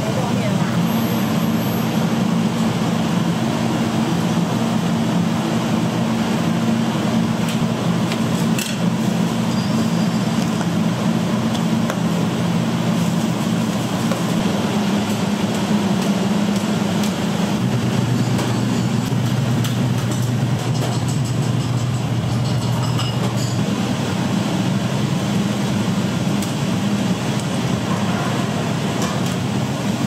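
Noodle-shop kitchen ambience: a loud, steady low machine hum with voices in the background and a few light clinks of bowls and utensils.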